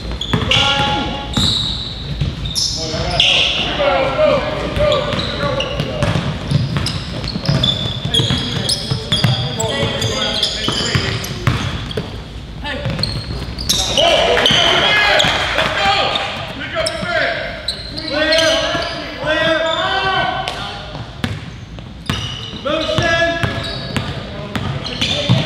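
A basketball game in an echoing gym: the ball bounces repeatedly on the hardwood floor, sneakers squeak in short bursts, and players and spectators call out in indistinct voices.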